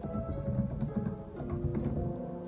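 Typing on a laptop keyboard, an uneven run of key clicks, over lo-fi background music.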